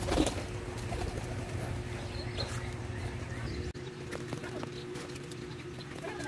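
A dove cooing over a steady low hum, with a brief knock just after the start.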